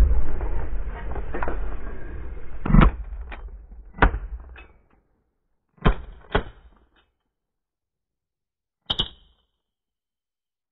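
A volley of shotgun shots: about five sharp reports spaced a second or more apart, the last near the end, following a couple of seconds of rustling movement noise.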